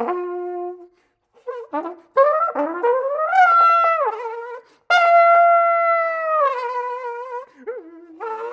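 Solo flugelhorn playing in short phrases broken by pauses. After a brief opening note and a gap, the pitch slides upward into a held tone; then, about five seconds in, a loud sustained high note drops to a lower held note.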